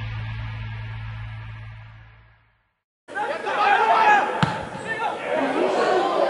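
Logo-sting music with a low hum fades out into a moment of silence; then football match sound cuts in, a man's voice over a stadium crowd, with one sharp knock about a second after it starts.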